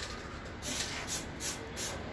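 Aerosol spray paint can hissing in short bursts, about four in two seconds, as paint is sprayed onto a bicycle frame.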